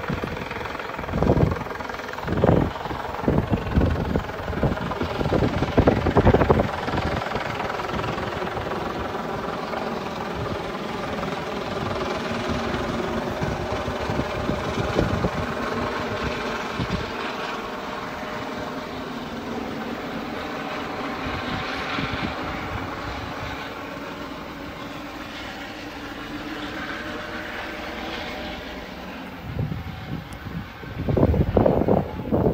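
A steady engine drone holding several pitches, with a few loud rumbles on the microphone during the first six seconds.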